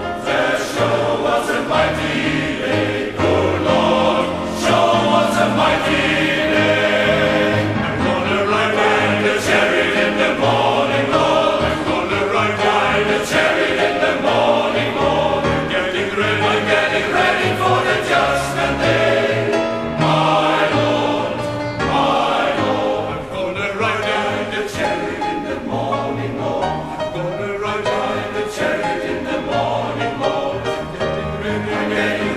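Men's choir singing a gospel spiritual in full voice, in steady rhythm, with grand piano accompaniment.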